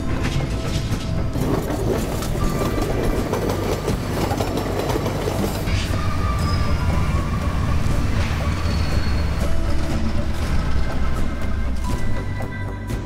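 Electric commuter train running on the tracks: a steady low rumble with repeated clacks of the wheels over the rails.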